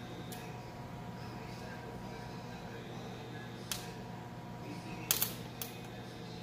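A few sharp clicks from parts being handled in a car's engine bay: a single click in the middle and a quick cluster of clicks near the end, over a steady low hum.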